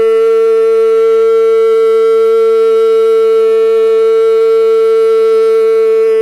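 A single long held note, steady in pitch and level, with many overtones.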